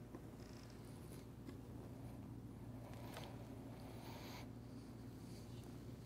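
Quiet room tone: a steady low hum, with two faint soft hisses about three and four seconds in.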